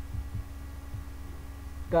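A steady low background hum with a faint thin tone above it, broken by a few soft low thumps in the first second. A voice starts at the very end.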